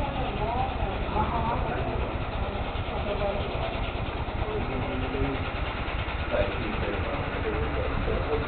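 Indistinct voices of people talking at a distance, over a steady low rumble.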